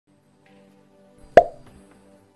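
Quiet instrumental backing music begins, with faint held notes, and a single sharp pop close to the microphone about one and a half seconds in.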